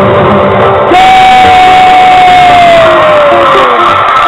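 Loud live pop music with a crowd cheering and shouting. About a second in, a long held note starts and slides slowly downward for nearly three seconds.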